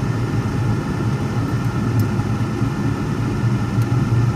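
Steady engine and road noise heard from inside the cabin of a moving car: a low hum with an even hiss above it.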